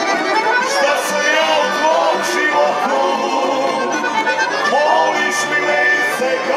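Live tamburica band playing a folk tune: plucked tamburicas over a begeš bass line and cajón, with the accordion prominent in the melody.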